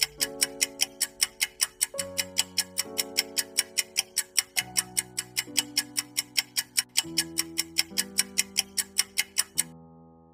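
Quiz countdown-timer sound effect: rapid, even clock-like ticking over sustained music chords that change every few seconds. The ticking stops just before the end, leaving a held chord as the timer runs out.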